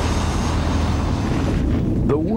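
Airliner cabin noise: a steady rush of engine and airflow sound with a strong low hum underneath.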